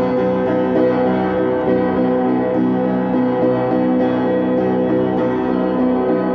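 Upright piano played with both hands: chords and notes held so that they ring together, changing every second or so at an even level.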